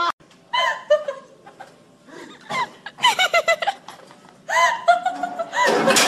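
People laughing in several short bursts, with a louder, noisy clatter near the end.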